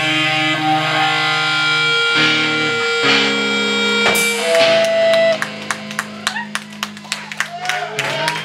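Hardcore punk band playing live: distorted electric guitar and bass chords ring out loud, then cut off about five seconds in, ending the song. Scattered clapping and cheering follow.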